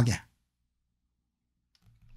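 The last syllable of a man's speech ends about a quarter second in, followed by near silence with only faint low sounds near the end.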